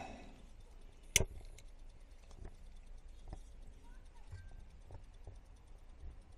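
A lighter struck once with a sharp click about a second in, relighting a small tray of methylated spirits, followed by faint ticks and low knocks of the metal stove being handled.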